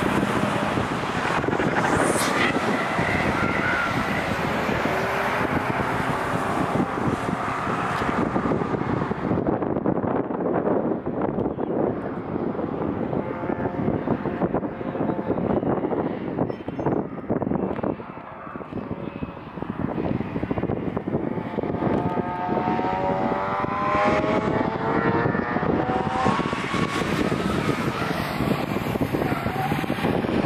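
Performance cars running hard on a race circuit, their engines revving up through the gears again and again in the second half.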